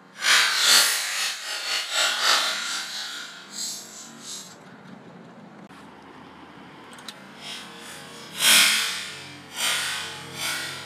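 Rough scraping and rubbing noises in uneven bursts, stretched out by slow-motion playback. They are loudest in the first seconds and again about eight and a half seconds in, with a quieter stretch between.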